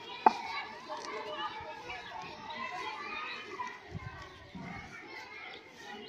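Children's voices and chatter in the background, with a single sharp knock about a third of a second in.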